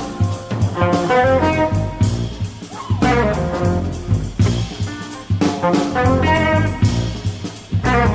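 Jazz quartet playing live: short electric guitar melody phrases, one after another, over electric bass and a drum kit.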